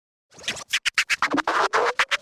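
Intro music opening with a run of turntable-style record scratches: quick, choppy strokes starting about a third of a second in, with a rising pitch near the end.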